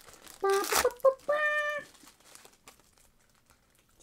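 Foil trading-card pack wrapper being torn open and crinkled: a short sharp rip less than a second in, then faint rustling of the foil and cards.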